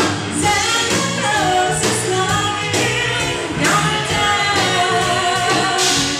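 A woman singing lead into a microphone over a live pop-rock band of electric guitar, electric bass, drum kit and keyboard.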